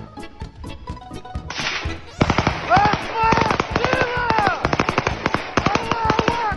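Light comic music with a steady beat. From about two seconds in, long bursts of rapid automatic rifle fire break in, many shots in quick succession, with men shouting over the gunfire.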